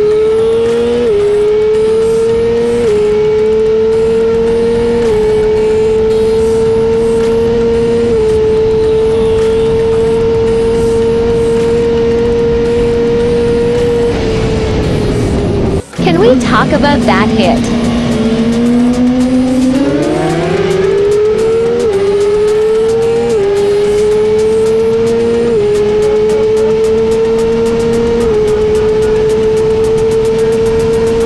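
Sport motorcycle engine at high revs under hard acceleration, its pitch climbing steadily and dropping back at each upshift every two to three seconds. About halfway through the sound breaks off for an instant, then the revs fall and climb again through another run of upshifts.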